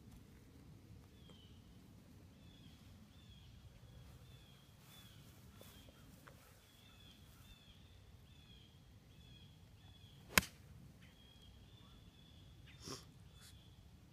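A golf iron striking the ball off the tee: one sharp, loud click about ten seconds in. Before it, a faint repeated high chirping runs over a quiet outdoor background.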